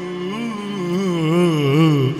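A man singing a long, ornamented line through a microphone and PA speakers. The pitch wavers up and down in wide swells, and the voice grows louder toward the end.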